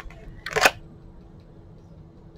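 Tarot cards being handled on a tabletop: a faint click at the start, then one short, sharp card snap about half a second in. A faint steady hum runs underneath.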